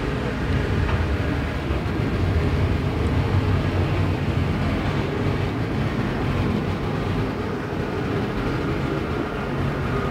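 A field of IMCA Modified dirt-track race cars with V8 engines running at race pace. It makes a steady, dense engine drone at an even level, with no single car standing out.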